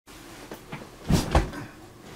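Handling noise from the recording device being moved and set in place: two quick, loud thumps about a second in, a quarter second apart.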